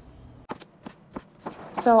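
Kitchen knife slicing raw chicken breast on a cutting board, the blade knocking on the board about five times at uneven spacing.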